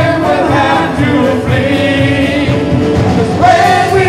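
Live worship band performing a song: several voices singing together into microphones over electric guitar and band accompaniment.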